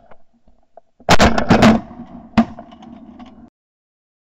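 Several shotgun shots in quick succession from more than one hunter, a tight volley about a second in and one more shot a moment later, fired at Canada geese flushing off the water. The sound cuts off suddenly shortly before the end.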